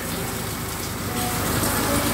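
Steady rain, an even hiss of drops falling on the van and the wet ground outside the open cab door, growing slightly louder about a second in.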